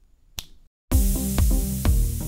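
A single finger snap, followed about half a second later by electronic music with a steady beat starting abruptly.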